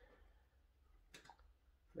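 Near silence, broken by a quick pair of faint clicks just over a second in.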